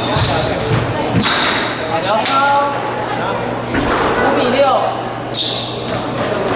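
Squash rally on a hardwood court: sharp hits of the ball off racket and walls, ringing in the enclosed court, with shoes squeaking on the wooden floor.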